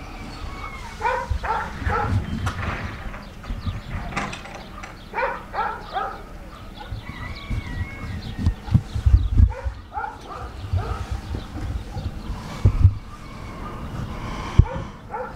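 Short animal calls, repeated in a few quick clusters, over low thumps and rumble.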